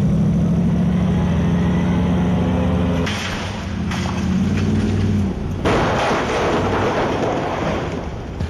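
Stunt muscle car's engine running hard at a steady high pitch for about three seconds, broken by a burst of noise. From about six seconds a loud, rough noise takes over.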